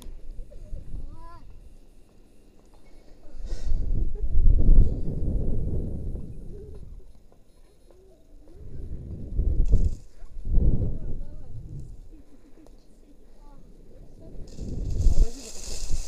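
Wind rushing over a body-mounted camera microphone as a rope jumper swings back and forth on the rope. The rush swells three times, about every five to six seconds, and faint distant voices are heard in the quieter gaps.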